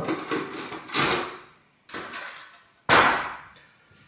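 Metal drill-bit case handled and set down on a wooden workbench: a few separate knocks and clatters about a second apart, the loudest a sharp clank about three seconds in.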